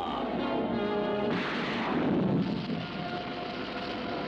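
Cartoon orchestral score, broken about a second in by a sudden loud blast sound effect that lasts about a second before the music carries on.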